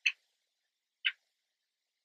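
Two short, sharp ticks about a second apart, in the steady once-a-second rhythm of a ticking clock.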